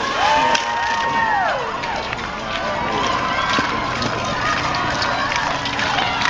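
Spectators shouting and cheering for passing cross-country ski racers, with long drawn-out yells in the first two seconds over the noise of the crowd.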